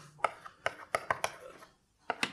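Chalk on a blackboard: a quick, irregular run of sharp taps and short scrapes as a formula is written, stopping shortly before the end.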